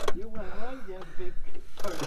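A man's voice, low and indistinct, fading out after about a second.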